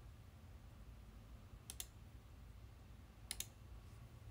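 Two clicks of a computer mouse button, each a quick double tick of press and release, about a second and a half apart, over a faint low hum.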